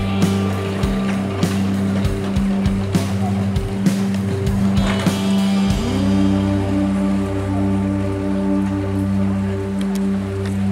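Background instrumental music: picked notes in the first half give way to smoother held tones about six seconds in.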